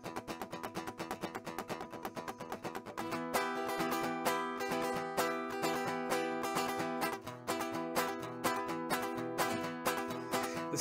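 Acoustic guitar strummed fast in a steady rhythm, the instrumental intro of a song; it gets louder and fuller about three seconds in.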